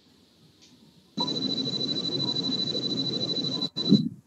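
A steady, noisy hum with a thin high whine running through it, starting abruptly about a second in and cutting off suddenly near the end.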